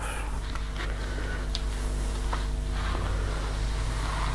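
A steady low hum under faint rubbing as a small craft iron is pushed along a fabric strip that is folding through a plastic bias-tape folding tool on an ironing board.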